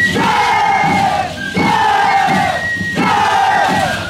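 A troupe of Shacshas dancers shouting together in unison: three long calls, each falling in pitch, about one every second and a half.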